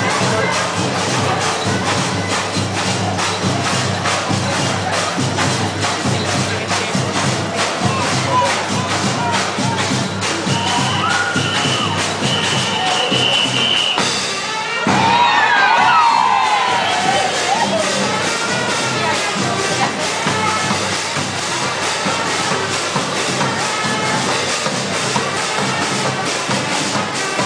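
A carnival drum troupe playing a dense, driving street-parade beat, with a crowd cheering and shouting over it. A high held note sounds briefly a little before the middle, and just after a short dip about halfway a burst of shouting rises above the drums.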